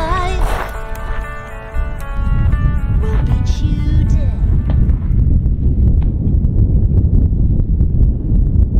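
A song with singing fades out about two seconds in. Then a loud, gusting low rumble of wind buffeting the microphone takes over, with scattered small knocks.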